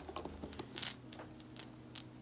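Items being handled inside a faux-leather backpack pocket as a small plastic Advil bottle is pulled out: a few faint clicks, and one brief sharper rattle a little under a second in.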